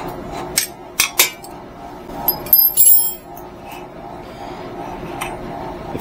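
Hand tools on an e-bike's rear suspension pivot: a hex key clicking and clinking against the metal pivot hardware. There are a few sharp clicks in the first second and a half, then a brighter ringing clink of metal on metal around the middle.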